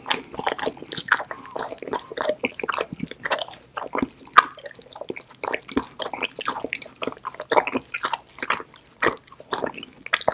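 Close-miked chewing of a bite of edible chocolate soap bar, a dense run of quick, irregular mouth clicks and smacks.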